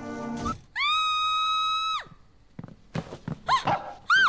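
A woman's high-pitched scream, held steady for about a second, followed near the end by shorter cries that rise and fall in pitch.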